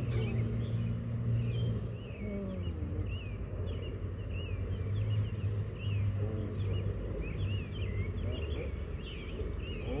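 Birds chirping in quick, repeated short calls throughout, over a steady low hum.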